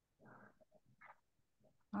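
Near silence, broken by two faint, brief sounds: one about a quarter second in and a shorter one about a second in.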